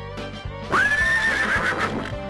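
A horse whinnying: one long, high call that starts just under a second in, over background music.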